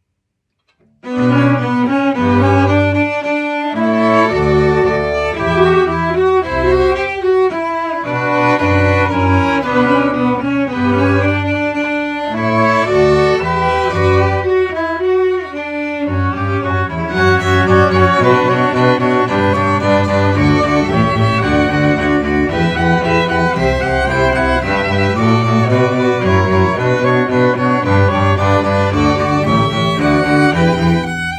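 A string ensemble of first and second violin, viola, cello and double bass playing bowed, starting about a second in after a brief silence.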